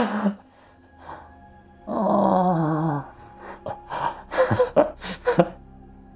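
A man laughing: a sharp gasp at the start, a drawn-out wavering laugh about two seconds in, then a string of short breathy bursts.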